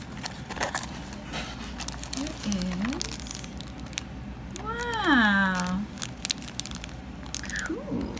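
Clear plastic bag and thin cardboard box crinkling and crackling as a bagged squishy toy is pulled out of its package, with a person's wordless vocal sounds: a short low one about two and a half seconds in and a longer, louder one about five seconds in that rises and then falls.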